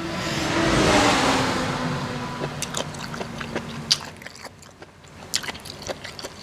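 A vehicle passing close by, its engine noise swelling to a peak about a second in and then fading over the next few seconds. Through the rest, a person chews mouthfuls of papaya salad and rice noodles, with small sharp mouth clicks.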